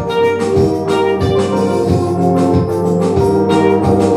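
Live instrumental gospel music: sustained organ chords with electric guitar and drums.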